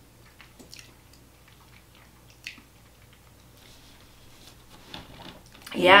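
A few faint, short smacking and clicking mouth sounds from tasting a sticky candy gel, then a voice exclaims loudly near the end.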